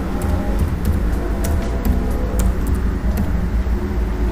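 Computer keyboard keys clicking in an irregular run as a password is typed, over a steady low rumble.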